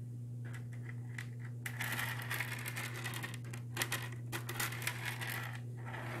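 Fingers tapping and scratching on the ornaments inside a dry, empty aquarium. Light clicking taps come first, then a denser stretch of scratching about two seconds in, then more clusters of quick taps. A steady low hum runs underneath.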